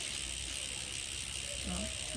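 Novatech rear hub's freehub ratchet buzzing steadily as the rear wheel freewheels, a rapid run of pawl clicks: a loud-clicking ('đùm nổ') hub.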